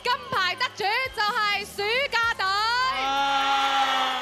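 Excited high-pitched whooping and cheering voices, the pitch swooping up and down, ending in one long held note about three seconds in, with music.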